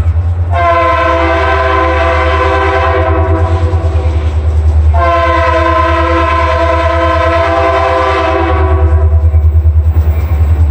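Approaching diesel locomotive's multi-note air horn sounding two long blasts, each about four seconds, over a steady low rumble.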